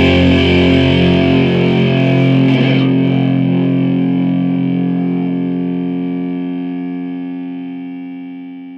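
The closing chord of a nu-metal song on heavily distorted electric guitar, held and left to ring out, fading gradually from about three seconds in.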